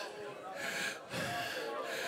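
A man breathing heavily into a close handheld microphone, a few audible breaths in a row, with faint voices in the background.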